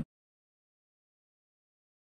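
Total silence: the sound cuts out completely right after the tail end of a spoken word at the very start, with no room tone at all.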